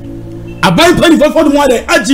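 A man speaking loudly and animatedly, starting about half a second in, after a short pause with a low steady hum.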